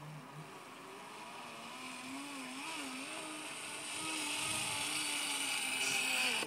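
Flying fox trolley wheels running along the steel cable: a continuous whirring hum with a slightly wavering pitch over a hiss, growing steadily louder.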